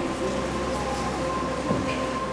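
A steady held chord of sustained organ-like keyboard tones, the background music of the scene, continuing without a break.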